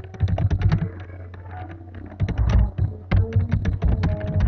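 Typing on a computer keyboard: quick runs of key clicks with a short lull about a second in. A steady low hum runs underneath.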